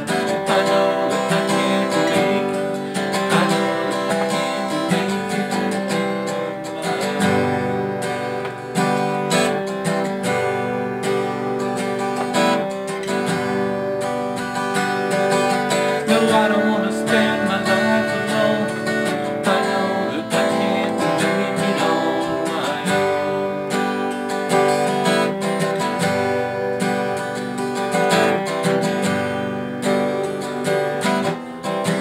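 Acoustic guitar strumming the chords of a song at a steady pace.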